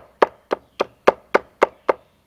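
Machete blade chopping quickly at the end of a wooden stick held against a log, sharpening it to a point: about eight light, sharp chops, close to four a second and evenly spaced.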